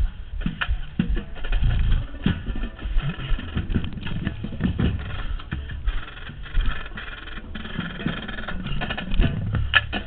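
Uneven wind rumble and knocks on a camera mounted on a marching trumpet as the horn is carried across the field, with a drum corps' brass and drums under it.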